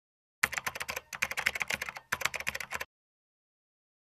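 Keyboard-typing sound effect: a rapid run of clicks lasting about two and a half seconds with two brief breaks, starting and stopping abruptly out of dead silence.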